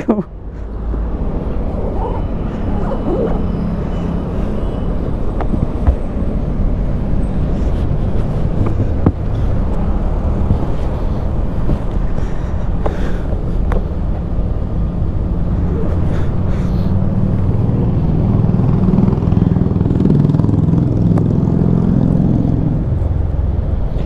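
Steady low rumble of vehicle engines, with traffic passing on the road.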